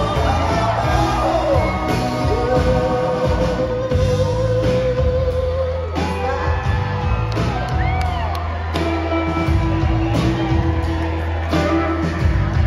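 Live soul band playing over drums, bass and guitars, with the singer holding long notes: one from about two seconds in, another from about nine seconds in to the end. Recorded from within the crowd.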